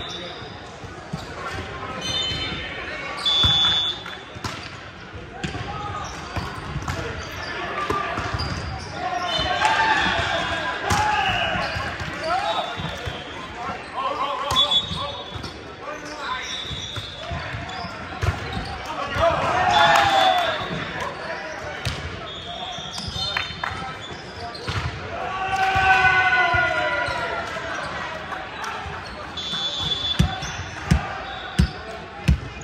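Busy gym noise in a large echoing hall: players' voices calling and shouting, with the loudest shouts about a third, two thirds and near the end of the way through, short high sneaker squeaks on the hardwood floor, and volleyballs thudding on the floor from games on several courts at once.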